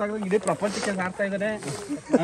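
Several people talking over one another, men's voices in a group conversation.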